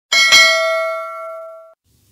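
A bright, bell-like ding sound effect: a struck chime with a second quick hit just after, ringing out with several tones and then cut off abruptly after about a second and a half.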